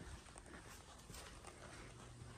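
Faint footsteps of several people walking on a hard floor: soft, irregular ticks over a low hum.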